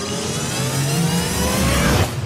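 Transition sound effect: a tone that climbs steadily in pitch and grows louder, cutting off suddenly at the end.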